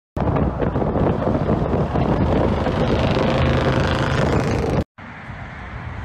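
A loud vehicle noise with wind on the microphone, cutting off suddenly near the end. Quieter outdoor background follows.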